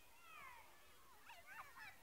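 Faint, distant high-pitched children's cries and shouts, a couple of falling calls early on and a quick flurry of short squeals in the second half.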